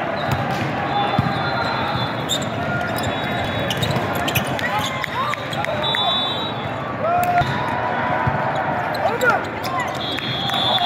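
Busy indoor volleyball hall: many voices chattering and calling, with volleyballs being struck and bouncing on the hard court and sneakers squeaking on the floor, all echoing in the large hall.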